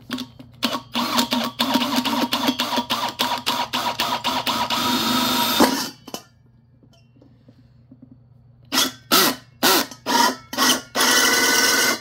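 Power drill boring a hole through the centre of an aluminium bowl on a wood block, the bit biting into the metal. The drill runs in quick stuttering pulses for about five seconds, stops, then comes back in a few short bursts and a steady run near the end.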